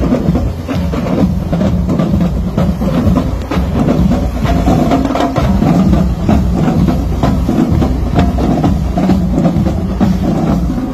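Marching band drums playing, with a steady run of drum hits under lower pitched band sound.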